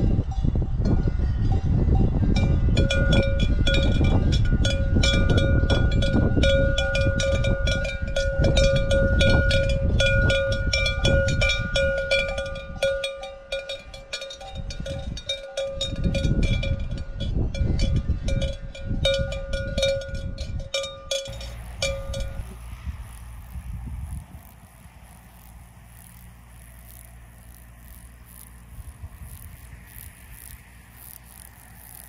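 A cowbell on a grazing cow clanking over and over with a sustained metallic ring, over heavy low wind rumble on the microphone. The bell stops about 22 seconds in, leaving softer wind noise.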